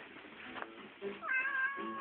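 A black domestic cat gives one long meow at an even pitch. It starts about a second in and is held for just over a second.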